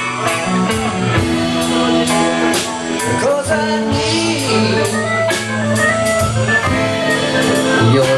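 Live band playing a rock song, with electric guitar and drum kit and a man singing lead.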